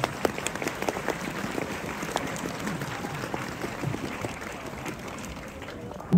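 Crowd applauding, a dense patter of many hands clapping that slowly dies down.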